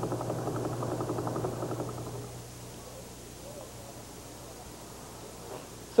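A pulsar's radio signal played as sound: a rapid, even train of pulses that fades out about two seconds in, leaving a low hum and faint hiss.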